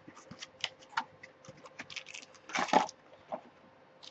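Small cardboard box being opened and unpacked by hand: a string of light, irregular clicks and scrapes of cardboard flaps and insert being handled, with one longer, louder rustle a little under three seconds in.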